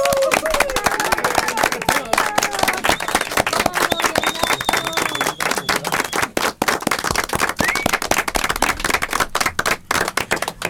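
A small group of people applauding with hand claps, with voices calling out over the clapping.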